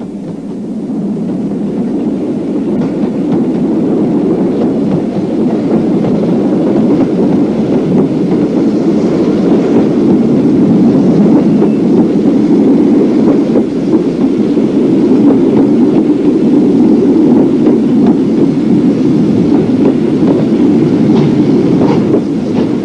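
Rumble of a train running on the line, growing louder over the first few seconds, then steady.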